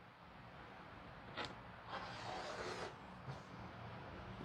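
Rotary cutter slicing through layers of fabric along a ruler on a cutting mat: a faint rasping cut lasting about a second, starting about two seconds in, after a short click.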